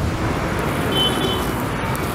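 Steady noise of road traffic, with a brief high tone about a second in.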